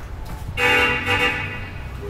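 A vehicle horn honks, a steady tone starting about half a second in and lasting a little over a second, loudest near its start.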